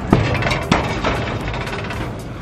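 A springboard diving board bangs sharply as a diver pushes off and knocks once more as it rebounds about half a second later, followed by the splash of a body hitting lake water.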